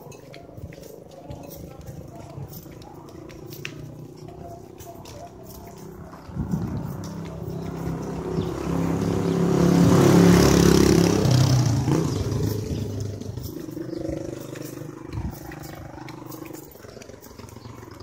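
A motor vehicle engine approaching and passing close by, growing louder to a peak about ten seconds in and then fading away.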